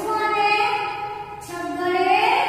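A woman's voice in a drawn-out sing-song, a string of long held notes about half a second each, in the manner of reciting numbers aloud to young children.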